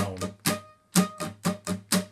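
Steel-string acoustic guitar strummed in a quick down, down-up, down-up pattern. The strums break off briefly just before a second in, then go on evenly.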